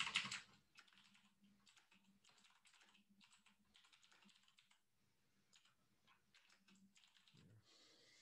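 Faint typing on a computer keyboard: a run of irregular, quick keystrokes as a line of text is typed.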